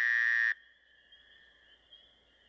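Night insects: a loud, steady, high buzz that cuts off suddenly about half a second in, leaving a faint, high, steady tone.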